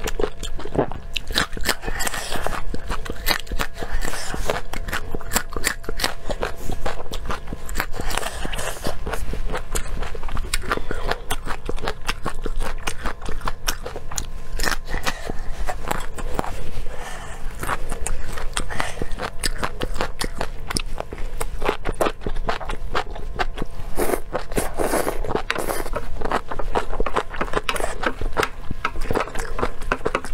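Close-miked chewing and crunching of raw red chili peppers, a dense run of crisp, wet crackles that goes on without pause.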